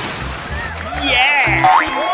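Cartoon boing sound effect, a wobbling springy tone about a second in followed by a quick rising whistle, over background music with a steady pulsing bass beat.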